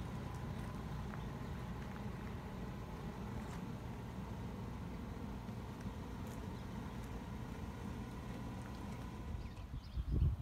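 Wind blowing on the microphone: a steady low rumble that flickers unevenly, with no distinct events.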